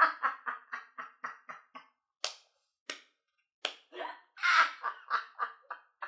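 A woman laughing hard in quick, rhythmic 'ha-ha' pulses. The laughter breaks off a little before two seconds in and starts again about a second and a half later. Two short sharp sounds fall in the gap, about two and three seconds in.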